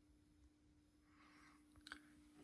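Near silence: a faint steady hum, with one small click just before the end.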